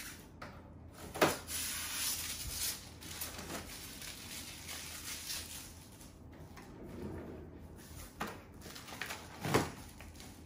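Handling noise as plastic protective wrapping is peeled and crinkled off a new air purifier's casing. Two sharp knocks stand out, about a second in and near the end.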